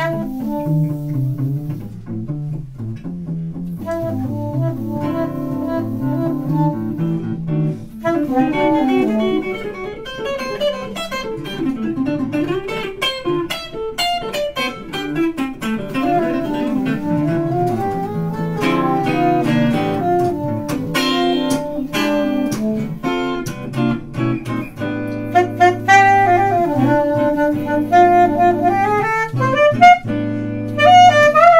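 Live jazz duet of an archtop hollow-body electric guitar and a saxophone playing together, the saxophone carrying a wandering melody over the guitar. It gets louder and busier in the last few seconds.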